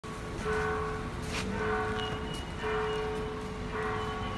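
A church bell ringing over and over, struck about once a second, each stroke ringing on into the next.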